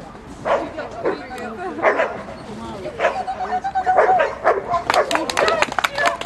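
Jack Russell Terrier barking in sharp yips, about five times, among voices; a quick run of sharp clicks follows near the end.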